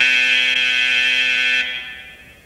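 A gym scoreboard buzzer sounds one steady, loud, high-pitched blast of about a second and a half, then cuts off sharply. It marks the end of a wrestling period, as the wrestlers break apart and stop.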